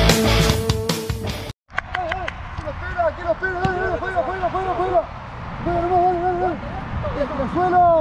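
Rock music that cuts off about a second and a half in. Then a man shouts short repeated calls, several a second, with a few faint ball kicks on a football training pitch.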